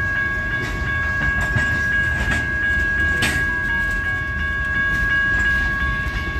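Freight train of tank cars rolling past: a steady heavy rumble of steel wheels on the rails, a few sharp clicks at the rail joints, and a steady high ringing tone over it throughout.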